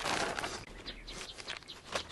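Marinated veal and its marinade poured out of a plastic vacuum bag into a metal pan under a wire rack: soft wet rustling of the bag and dribbling liquid, loudest at the start and fading. A few faint bird chirps sound in the background.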